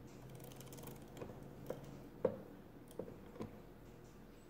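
Brass result carriage of a 19th-century Thomas de Colmar arithmometer being handled, with small metal clicks as it shifts and settles into place. A faint rapid ticking comes first, then about five separate clicks, the loudest a little over two seconds in.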